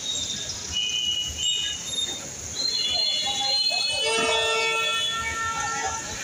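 Street noise with short high-pitched squealing tones coming and going, then a long horn-like tone with several pitches held for about two seconds near the end.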